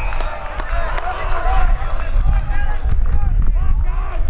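Several voices shouting over one another as a player is tackled in Australian rules football, most dense in the first two seconds. A low wind rumble on the microphone runs underneath.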